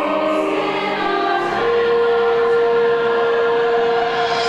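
A large mixed choir of men's and women's voices singing a musical-theatre finale, moving through several notes and then holding one long note from about a second and a half in.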